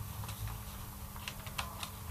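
A run of light, short clicks, most of them in the second half, over a low steady hum.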